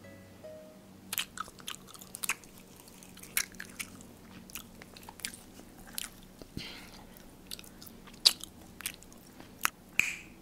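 Crisp pan-fried meat pie being bitten and chewed close to the microphone: irregular sharp crunches of the crust, about one or two a second, the loudest near the end.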